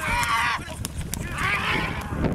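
Racehorses galloping on a dirt track just after leaving the starting gate, their hoofbeats coming as irregular thuds. Voices yell briefly at the start and again near the end.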